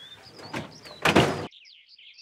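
A heavy wooden trunk scraping as it is pushed along. The scrape builds to its loudest about a second in and stops abruptly, leaving only birds chirping.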